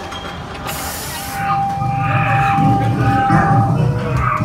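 Attraction machinery: a short burst of hissing air about a second in, then a steady high tone over a mechanical clatter and rumble that grows louder.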